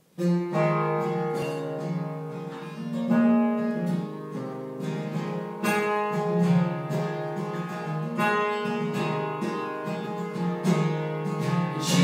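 Instrumental introduction on acoustic guitar, strummed chords, starting suddenly out of silence just after the start.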